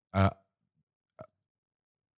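A short spoken 'uh', then near silence with one faint click about a second in.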